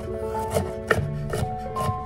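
Chef's knife chopping carrot into thin strips on a wooden cutting board: a few sharp knocks of the blade on the board, about half a second apart.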